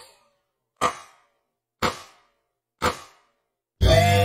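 Metronome count-in clicks, short and evenly spaced about a second apart, then an electric guitar lick starts just before the end.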